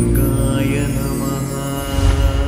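Channel ident music: a held, chant-like chord over a low bass drone, easing slightly in level, with a louder new chord starting at the very end.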